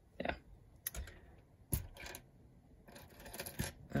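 Small plastic LEGO pieces clicking and clattering as a hand picks through a loose pile of minifigure parts: a few separate clicks, then a quick run of clicks near the end.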